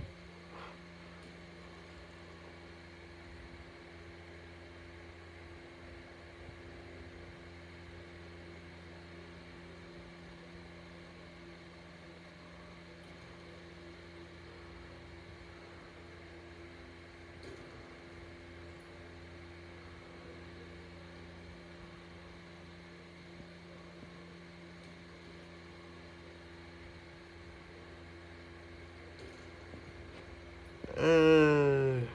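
Faint steady hum with a light hiss while a VHS tape runs through its blank start, with no programme sound yet.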